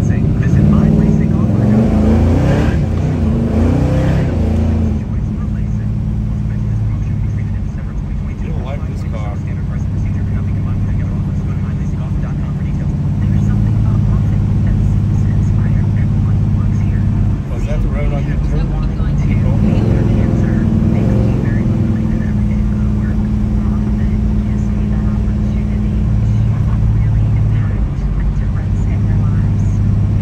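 The big-block V8 of a 1970 Chevelle SS 454, heard from inside the car while driving. Its pitch rises as it accelerates in the first few seconds and again around twenty seconds in, and it runs steadily between.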